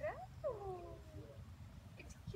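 Vizsla puppy whining: a short cry right at the start, then a longer whine falling in pitch about half a second in.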